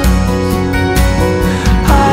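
Instrumental passage of an acoustic worship song: strummed acoustic guitar with held notes and a steady beat.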